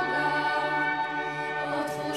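Church choir singing a hymn, the voices holding long notes together.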